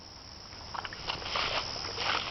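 Pekingese wallowing in shallow muddy water: irregular soft splashes and sloshes that start a little way in and grow louder.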